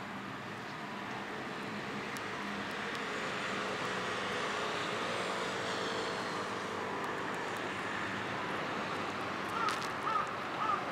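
Distant engine noise that slowly swells and then eases off as something passes by. A few short bird calls come near the end.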